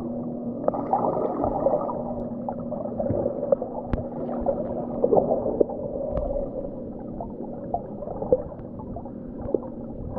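Underwater sound through a GoPro's waterproof housing: a muffled, churning wash of water movement with scattered sharp clicks and crackles. A low steady hum runs through the first half and stops about halfway.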